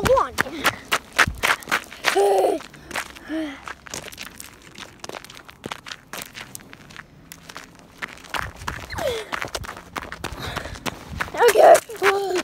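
Footsteps crunching on gravel as someone walks, with the camera carried low over the ground, many irregular short crunches. A few short wordless vocal sounds break in, about two seconds in, near the middle and near the end.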